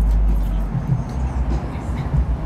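Street traffic noise: a loud, steady low rumble of vehicles at a city intersection.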